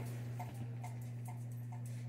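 Soft, even ticking, about three ticks a second, over a steady low hum.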